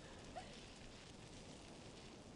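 Near silence: faint, even background noise with no distinct sound.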